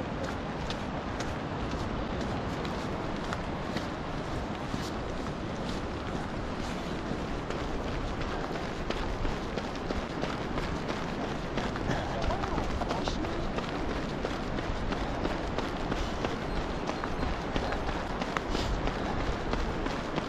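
Steady wind noise on the microphone of a runner's camera, with the runner's footfalls on tarmac and breathing, and scattered sharp clicks.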